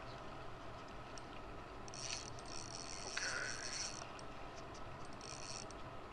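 Faint high-pitched buzz of a spinning reel's drag giving line for about two seconds, starting about two seconds in, as a hooked fish pulls against a drag set light. A few faint ticks come before and after it.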